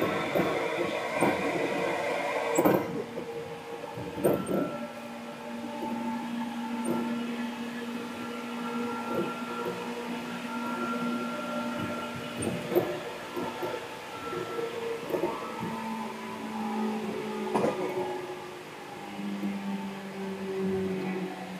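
Seibu 2000 series electric train running, heard from inside the car: steady whines from the traction motors and gears at several pitches, with rail-joint clicks. It is noisier and louder for the first few seconds, and the lowest tone settles a little lower near the end.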